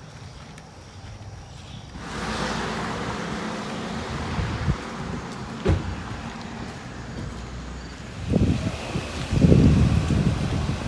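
Outdoor street ambience: a steady rushing noise that comes in suddenly about two seconds in, with low gusts of wind buffeting the microphone near the end.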